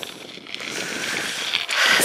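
Bicycle tyres rolling on a gravel track: a steady crackling hiss that grows slowly louder toward the end.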